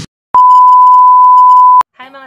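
A loud, steady electronic beep at a single pitch of about 1 kHz, a plain sine-wave bleep tone lasting about a second and a half; it starts and stops abruptly with a click at each end.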